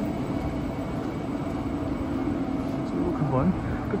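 KTX-Eum electric train running slowly alongside the platform: a steady sound with a few held tones, without sudden knocks.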